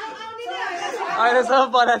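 Speech only: several people talking over one another.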